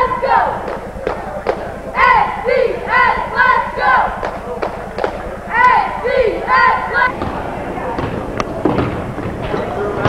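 High-school cheerleaders chanting a cheer in unison, short shouted phrases in a repeating rhythm punctuated by sharp claps. The chant stops about seven seconds in, giving way to general gym noise.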